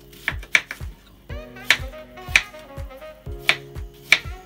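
A kitchen knife cuts through potato and strikes a plastic cutting board, giving a few sharp, irregular clicks. Background music with a steady beat plays underneath.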